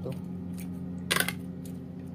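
Metal spoon clinking against the side of an aluminium pot while stirring chicken and potatoes in sauce, one sharp metallic clatter a little after a second in. A steady low hum runs underneath.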